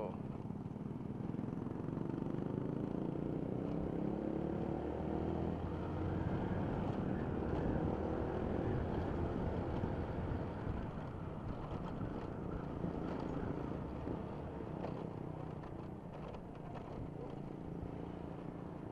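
Motorcycle engine pulling as the bike accelerates, its pitch rising over the first several seconds, then running steadily at cruising speed, with wind and road rush from riding.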